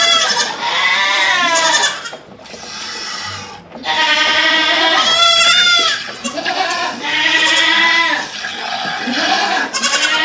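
Nigerian Dwarf goats bleating: about four long, wavering calls one after another.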